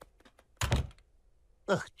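A single dull thump about half a second in, preceded by a few faint clicks.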